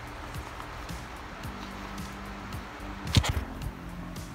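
Soft background music with steady low notes, and a brief burst of handling noise about three seconds in as the microphone is taken out of its packaging.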